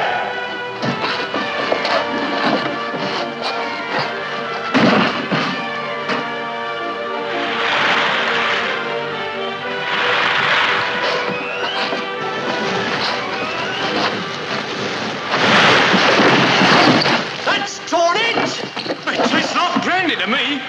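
Film score music over a stormy sea, with heavy waves breaking against a small boat in three loud surges, about eight, ten and sixteen seconds in. The last surge is the loudest.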